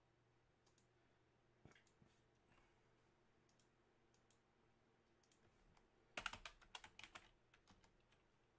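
Faint typing on a computer keyboard: a few scattered keystrokes, then a quick run of keys about six seconds in.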